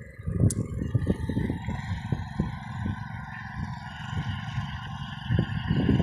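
Tractor engine running as it puddles a flooded paddy field, heard as an uneven low rumble with a steady hum above it.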